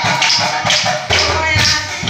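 Nagara Naam music: nagara drums beaten with sticks and hand cymbals in a steady, repeating beat, under a woman's lead singing.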